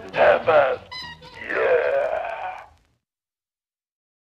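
A voice making a few short sounds, then a long wailing moan that falls in pitch, ending abruptly into dead silence about three seconds in.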